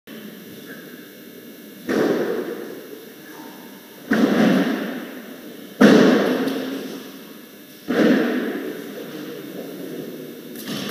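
Four heavy thuds about two seconds apart, each dying away slowly in a large echoing hall: loaded barbells with bumper plates being dropped onto lifting platforms.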